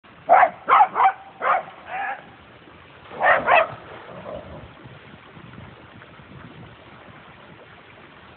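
A dog barking: five barks in the first two seconds, then two more about three and a half seconds in.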